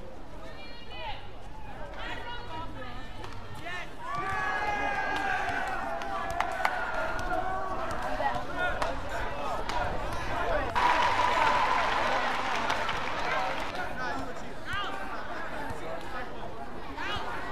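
Sound of a badminton match in an arena: short pitched squeaks and sharp hits from the court, with spectators' voices. A burst of crowd cheering and applause starts suddenly about eleven seconds in and lasts a few seconds.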